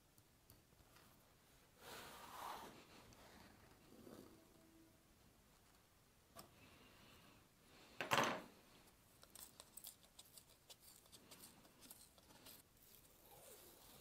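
Faint sounds of a slim knife being drawn through thick vegetable-tanned leather, a few soft scraping strokes, then one louder rasp about eight seconds in as the cut strip is lifted free. Scattered light clicks follow as the strip is handled.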